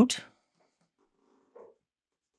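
The last syllable of a man's spoken words, then near quiet room tone with one faint, brief sound about one and a half seconds in.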